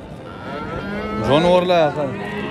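Bulls mooing: a long, low moo begins about half a second in, and a louder call that rises and falls in pitch comes near the end.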